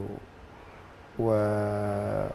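A man's voice: a short pause, then about a second in a drawn-out hesitation sound 'wa...' held on one steady pitch.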